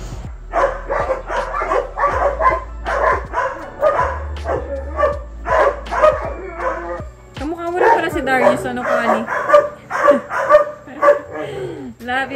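Newborn puppies giving short, high yelping cries about two or three a second, some sliding down in pitch, over background music with a steady bass line.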